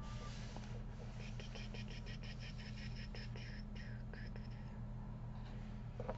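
Quiet room tone with a steady low electrical hum. From about a second in, a faint, rapid series of high-pitched chirps runs for a few seconds, then fades.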